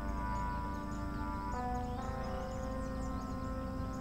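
Soft, slow ambient background music: sustained held chords that shift to new notes about one and a half and two seconds in.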